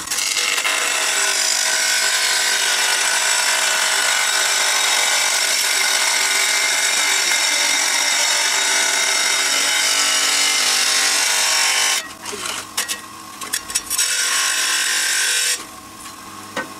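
Water-cooled electric tile saw's blade cutting through a ceramic tile: a loud, steady grinding with a high whine for about twelve seconds. The cut then ends and the saw runs on more quietly with a few scrapes of the tile, stopping shortly before the end.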